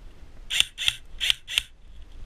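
Airsoft rifle firing four single shots in quick succession, about three a second, each a short sharp report.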